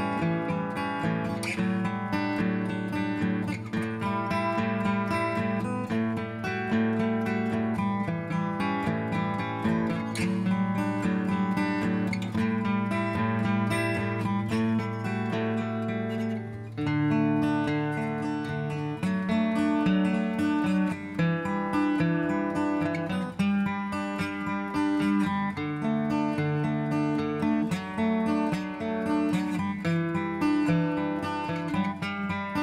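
Background music led by an acoustic guitar, plucked and strummed.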